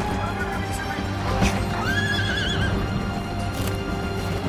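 A horse whinnying once, a short wavering call about two seconds in, over steady background music.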